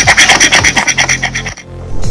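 Rapid scraping of a hand tool against a motorcycle helmet's plastic shell, roughening the surface so an adhesive mount will grip, over background music. The sound cuts off suddenly about one and a half seconds in.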